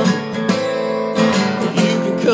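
Acoustic guitar strummed chords, several strums ringing on.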